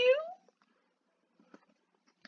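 A reader's voice ending a line on a drawn-out, rising, pleading "you?", then quiet with a single faint mouse click about one and a half seconds in.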